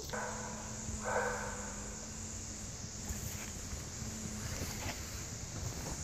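Quiet outdoor background noise with a faint, steady low hum and a brief soft sound about a second in; no distinct event stands out.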